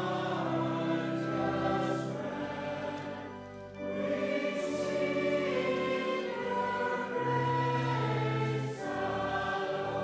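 A church congregation singing a hymn together over held low accompanying notes, with a brief break between lines about three and a half seconds in.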